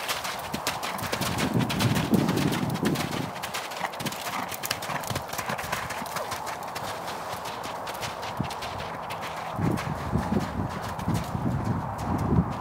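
A horse's hooves beating fast and evenly at a canter on wet, muddy ground and slush. Twice a lower rumble swells up for a second or two.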